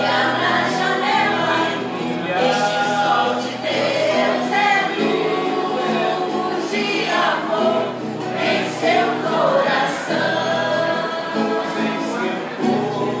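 A choir of several voices singing a song together, with long held notes.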